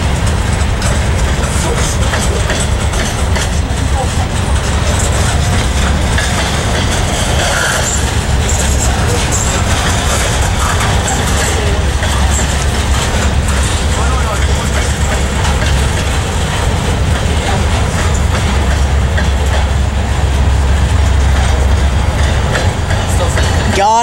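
Freight train cars rolling past at close range: a steady low rumble of steel wheels on rail with frequent clicks and rattles.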